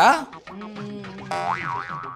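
Comedy 'boing' sound effect: a held low tone, then a springy pitch that warbles up and down twice near the end.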